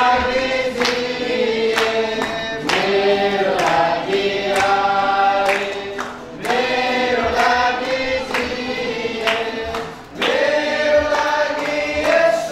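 A group of people singing a hymn together in held, drawn-out phrases, with hand claps keeping a steady beat.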